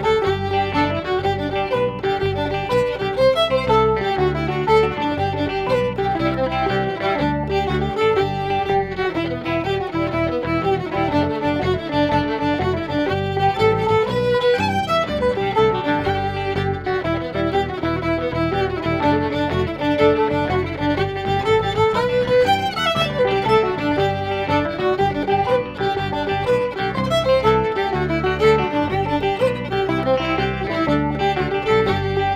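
Fiddle playing a lively English-style jig, bouncy and continuous, the notes moving quickly without a break.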